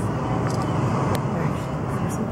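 A steady, low outdoor rumble with a couple of short, light clicks.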